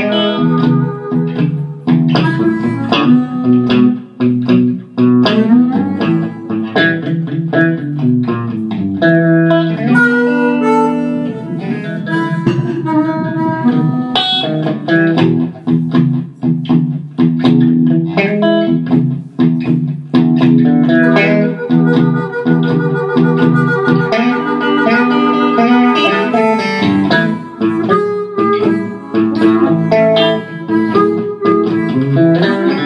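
Down-home blues played by a guitar and blues harp (harmonica) duo. The guitar picks a steady blues figure, and long held harmonica notes come in around the middle and again later on.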